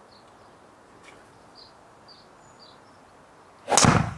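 Golf driver striking a ball off a practice mat: one loud, sharp crack near the end. Before it, a few faint high bird chirps over a quiet garden.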